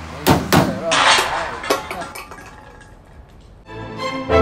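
Two sharp metallic clanks in quick succession, a foley clank dubbed onto a handshake, followed by a ringing, noisy tail that fades over a couple of seconds. Music starts near the end.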